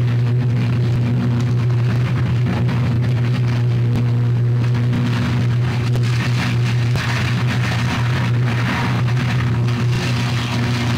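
Sustained high-voltage electrical arc at a burning substation: a loud, steady electrical buzz with a dense crackling hiss over it, the hiss growing stronger about halfway through. It is the sound of an arc fault still carrying current.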